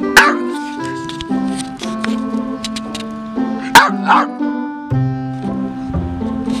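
Puggle barking: one sharp bark just after the start and two quick barks about four seconds in, a dog demanding to be let inside. Background music with sustained notes plays under the barks.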